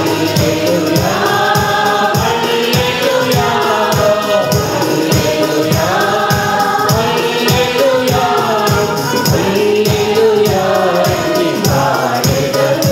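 Mixed choir singing a Telugu Christian song together into microphones, accompanied by an electronic keyboard with a steady percussion beat.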